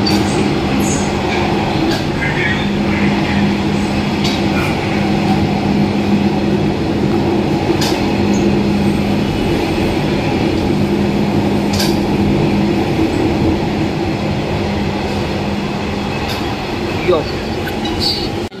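Kanpur Metro train running, heard from inside the carriage: a steady rumble of running noise with a constant low hum and a few light clicks.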